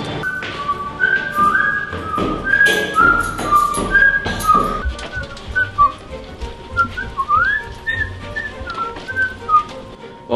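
A whistled melody, one clear line moving from note to note with a rising slide about seven seconds in, over a music track with bass and percussion hits.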